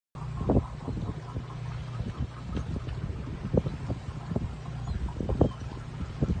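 A boat's engine hums low and steady, with irregular short low thumps over it.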